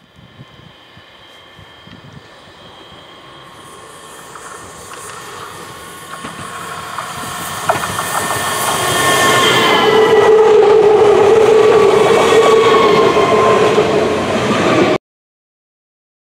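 DB class 442 Bombardier Talent 2 electric multiple unit approaching and passing at speed: wheel-on-rail noise with several steady whining tones, growing louder for about ten seconds and staying loud as it goes by, then cutting off suddenly about a second before the end.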